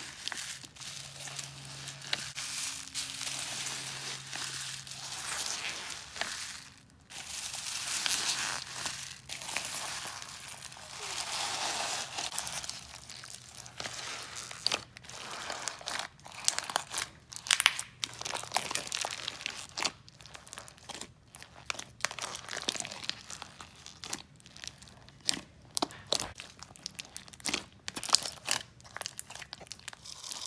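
Hands working a large batch of white slime packed with polystyrene foam beads: a steady crinkling rustle at first, then, from about halfway, rapid irregular crunchy crackles and pops.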